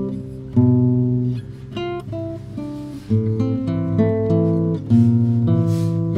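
Nylon-string classical guitar played solo: a slow melody over chords, each chord struck and left to ring, with new attacks every second or two.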